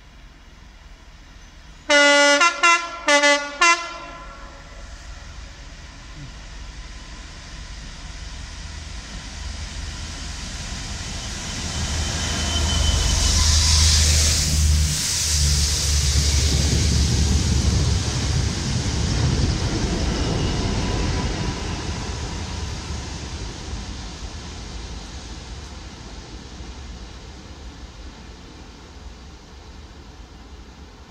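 Class 66 diesel locomotive on a rail head treatment train sounding its horn in a quick series of short blasts about two seconds in. Its engine rumble and wheel noise then grow louder as it approaches and passes directly below, loudest around the middle, and fade as it draws away.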